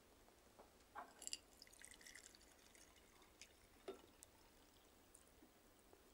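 Faint sound of hot water being poured from a steel flask into a glass beaker, mostly in the first half, with a small tick a little later; otherwise near silence.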